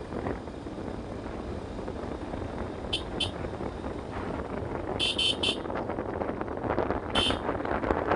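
Motorcycle riding at about 35 km/h, its engine and wind noise steady and slowly getting louder. Short high-pitched beeps cut through: two about three seconds in, a quick run of three around five seconds, and one more near the end.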